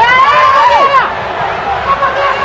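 A man's loud, high-pitched shout, rising and then falling, for about a second, with no clear words: a football coach yelling at his players. Crowd noise follows for the rest of the time.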